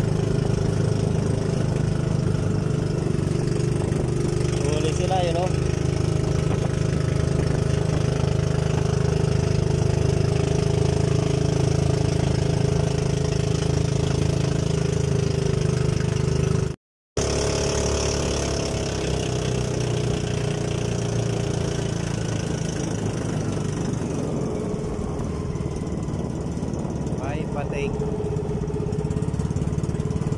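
Small outrigger-boat engine running steadily. The sound breaks off for an instant a little past halfway and then carries on with a weaker low hum.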